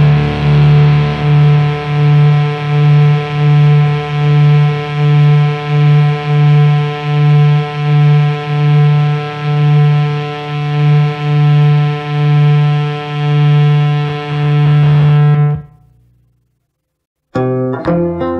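Heavy distorted electric guitar holding one sustained note, its volume swelling and fading about once a second, until it cuts off near the end. After a second and a half of silence, a new piece starts with plucked strings.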